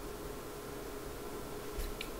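Low steady hiss of a quiet room with a faint constant hum, and one light click near the end.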